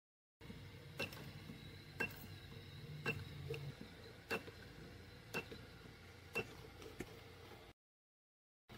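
Handheld spot welder firing on copper strip on a lithium-ion battery pack: a sharp snap about once a second, seven in all. The audio cuts out briefly at the start and again near the end.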